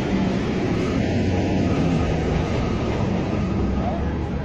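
Steady low rumble of outdoor street noise, with no voices standing out.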